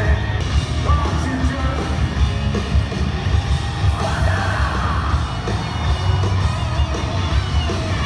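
Rock band playing live and loud in an arena, with heavy drums and bass, and yelling over the music.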